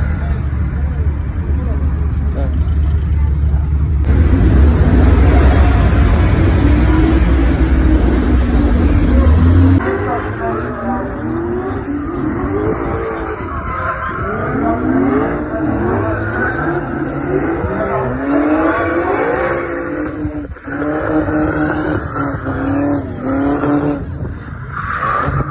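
Drift cars' engines revving up and dropping back again and again as they slide, with tyre squeal. A loud, steady low rumble fills the first ten seconds, after which the repeated rising and falling revs take over.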